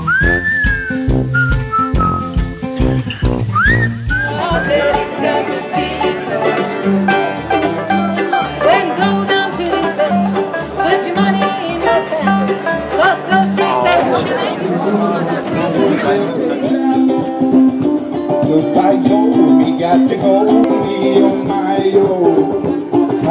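For the first few seconds, a whistled tune over a steady beat. Then a live bluegrass band plays: banjo and acoustic guitar over a steady plucked upright-bass line. About sixteen seconds in, the music changes to a different street performer.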